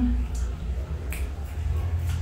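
Mouth clicks and smacks of someone chewing a piece of ripe guava: a few short, sharp clicks over a steady low hum.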